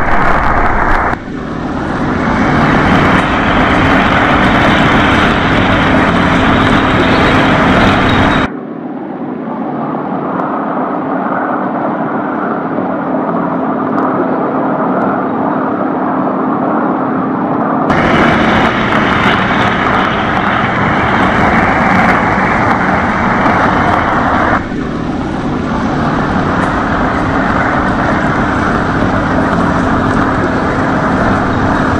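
Large luxury limousine driving, with steady road and engine noise that changes abruptly at each cut between shots. For about nine seconds in the middle the sound is duller and muffled, as heard from inside the car's cabin.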